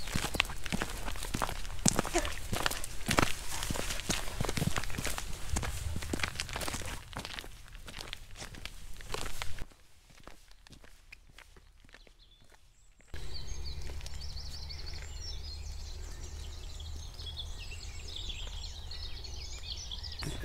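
Footsteps crunching on a gravel towpath, dense and irregular, for the first half. After a few seconds of near quiet, a steady low rumble of wind on the microphone follows, with small birds chirping faintly over it.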